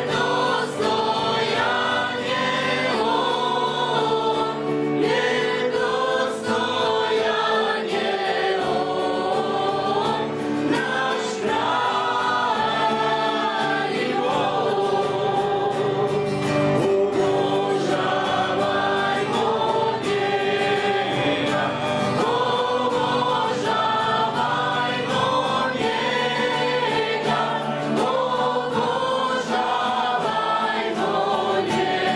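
A live worship band singing a hymn together, women's and a man's voices over strummed acoustic guitars and a keyboard, continuing without a break.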